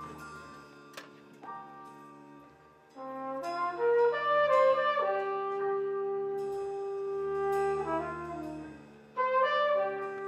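Jazz big band with brass section playing held chords: soft sustained chords at first, then the horns swell in about three seconds in and hold a loud chord that fades out, before a sudden louder entrance near the end.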